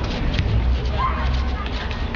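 Indistinct voices of a small group of people close by, with a short rising vocal sound about a second in, over a steady low rumble.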